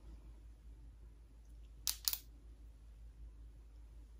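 Two quick clicks of penlight switches about halfway through as the lit light changes from one hand to the other, otherwise quiet room tone.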